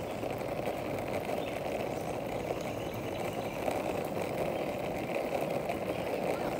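Skateboard wheels rolling over rough, cracked asphalt as the board coasts downhill without pushing: a steady, even rumble.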